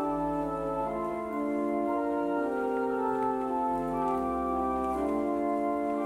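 Pipe organ playing slow, sustained chords over low bass notes, the harmony changing about once a second: offertory music while the gifts are collected.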